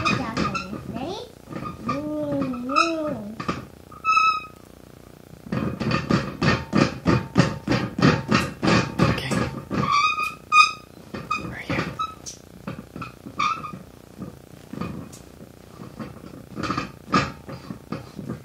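A young child's wordless vocal play: sung, gliding tones and high squeaks, with a run of quick, even, rhythmic sounds in the middle.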